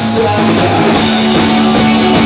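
Indie rock band playing live: electric guitars and a drum kit, with one note held steadily underneath.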